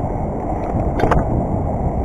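BMX bike rolling over concrete and asphalt: a steady tyre rumble with wind on the microphone, and a couple of clicks about a second in.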